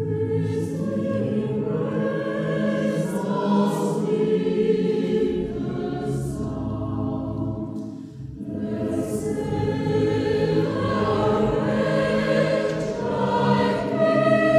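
A choir singing sacred choral music in sustained chords, with a brief pause between phrases about eight seconds in and the singing growing louder near the end.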